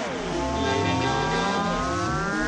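Electronic dance track in a breakdown: layered synth tones slide down in pitch, then climb slowly and steadily, building toward the next section.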